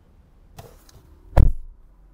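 A single dull thump about halfway through, with faint rustling before it.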